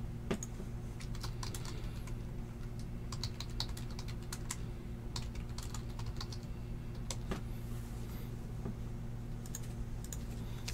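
Typing on a computer keyboard: irregular bursts of light key clicks over a steady low electrical hum.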